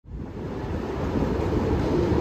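Steady rushing noise of an underground station's escalator hall, fading in from silence and growing louder, with a faint steady hum joining near the end.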